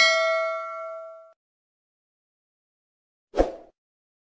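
Bell-like notification ding of a subscribe-button sound effect, ringing with several pitches and dying away within about a second and a half. A short thump comes about three and a half seconds in.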